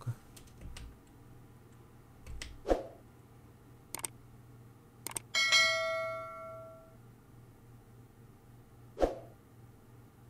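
Two clicks, then a bell-like chime that rings out and fades over about a second and a half: the sound effect of a YouTube subscribe-and-bell animation.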